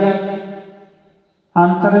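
A man's voice chanting in drawn-out, steady held notes, part of a Sikh katha recitation. The phrase fades out about a second in, and a new chanted phrase starts just before the end.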